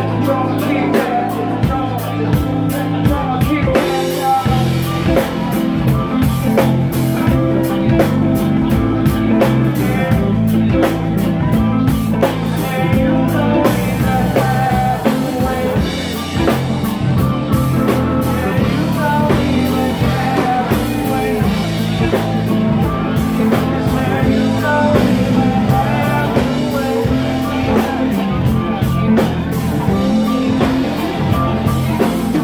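A live band playing a song: drum kit, bass guitar and keyboard with a singer over them.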